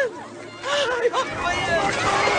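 Overlapping voices of a crowd, several people crying out at once over a background murmur, with no clear words.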